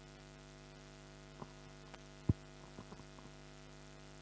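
Steady low electrical mains hum, with a few faint clicks and one short, low thump a little over two seconds in.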